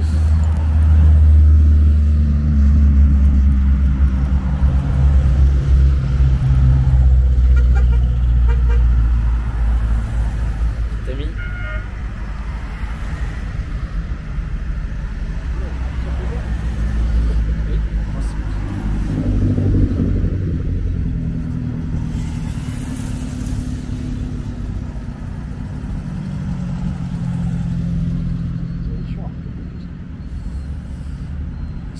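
A Renault 8 Gordini's rear-mounted four-cylinder engine drives past close by, its low engine note loudest in the first few seconds and fading after about ten. A short horn toot sounds near the middle, and other older cars then pass more quietly.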